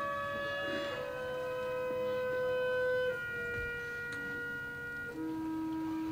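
Orchestral music from a ballet score: slow, held notes whose chord shifts about a second in, again near three seconds and near five seconds.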